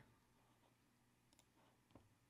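Near silence: room tone with two faint clicks, the second about half a second after the first, near the end.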